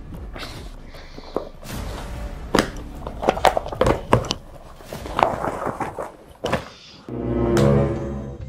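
Rustling of cloth and plastic with scattered knocks and thuds as things are pulled out of a bag. Background music comes in near the end.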